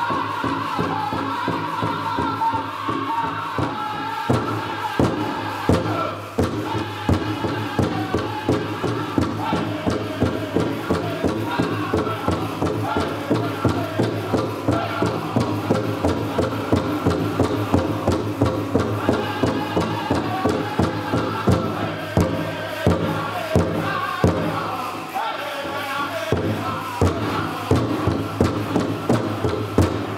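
Powwow drum group singing in chorus over a big drum struck in a steady beat, about two to three beats a second, as the song for a jingle dress dance.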